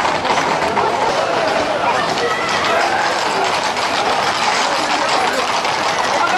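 Hooves of a tight group of Camargue horses clattering at a run on a paved street, mixed with a crowd's shouting voices.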